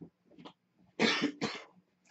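A woman coughing twice in quick succession, two short harsh coughs about a second in.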